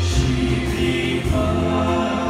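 A vocal group singing a Romanian worship song in harmony, with sustained notes, over live band accompaniment.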